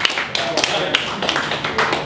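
A small audience clapping in scattered, uneven claps, with voices talking over it.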